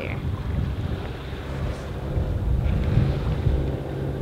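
Wind buffeting the microphone on a boat under way, over a steady low hum from the sailboat's engine running at cruise on a flat calm sea.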